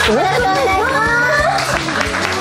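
Group of young women singing live into microphones over a backing track with a steady bass line, holding notes, with one long phrase gliding upward about halfway through.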